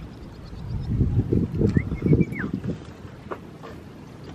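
Gusts of wind buffeting the microphone: a low rumbling rush for about a second and a half, starting about a second in.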